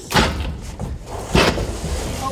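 Two heavy wooden knocks about a second apart as a stud-framed wooden set wall is wrenched loose and shifted by hand, with scraping and rustling between them.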